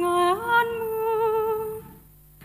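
A woman's solo voice singing the responsorial psalm: a held note that steps up to a higher note about half a second in, held with slight vibrato and fading near the end.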